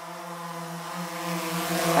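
Intro sound effect of drone propeller motors: a steady buzzing hum that swells in loudness, with a rising whoosh building toward the end.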